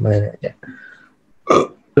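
A man's lecturing voice trails off, then after a short pause comes one brief noisy vocal sound from the throat about one and a half seconds in.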